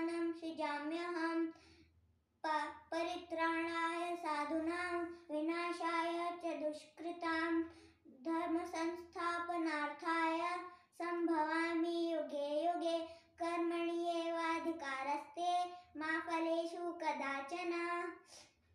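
A boy singing solo in long, held phrases that stay close to one note, with short breaths between phrases.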